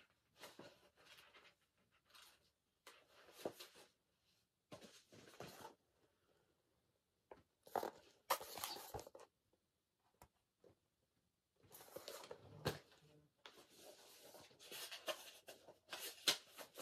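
Faint, intermittent rustling of paperback book pages being leafed through and handled, in short bursts with the loudest about eight seconds in.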